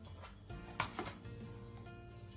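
A plastic cutting board knocking against the rim of a plastic mixing bowl as chopped onion is scraped off it into the bowl: a sharp knock just under a second in, a smaller one right after, and lighter taps before, over soft guitar background music.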